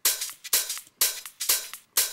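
Soloed electronic hi-hat pattern from a house track, short bright hits at about four a second, alternating louder and softer, with no kick or bass under them.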